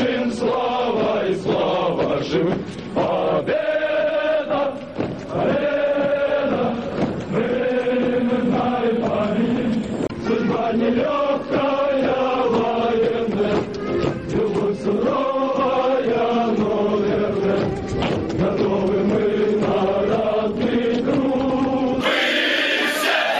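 A column of airborne-school cadets singing a military drill song in unison while marching: many male voices together in steady, continuous phrases.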